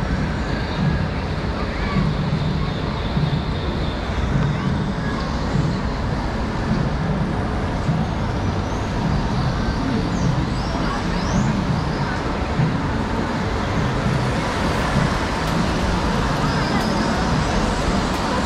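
Steady loud rushing noise from a crowded hall, with indistinct crowd chatter underneath and a few short high chirps about halfway through.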